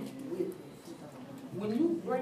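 Indistinct, murmured voices in a classroom, with a low rising hum-like vocal sound near the end.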